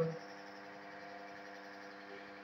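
A man's voice breaks off just after the start, then a steady low hum of room tone with a few constant tones runs on through the pause.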